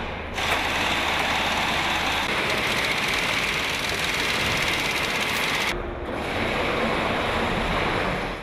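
Steady noisy din of a truck and engine assembly shop floor, machinery and air-like noise with no clear rhythm. It dips briefly and changes character about two-thirds of the way through.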